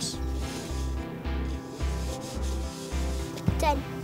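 Styrofoam cups being slid and shuffled across a table, with repeated light rubbing scrapes, over background music with a steady low beat.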